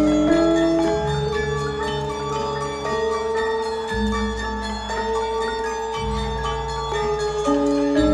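Javanese gamelan playing: bronze kettle gongs and metallophones struck in a steady melodic pattern, their notes ringing on over deep low tones that shift every couple of seconds.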